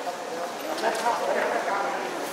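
Indistinct voices of several people talking over one another, with a few light clicks about halfway through.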